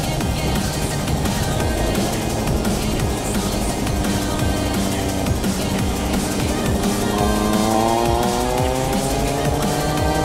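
Car engine running as the car drives a winding mountain road, rising steadily in pitch over the last few seconds as it accelerates out of a hairpin. Electronic dance music plays over it.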